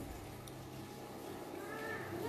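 A faint, short pitched call that arches in pitch near the end, like an animal's call, over a steady low room hum.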